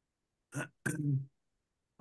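A man clearing his throat in two short rasps, about half a second and one second in.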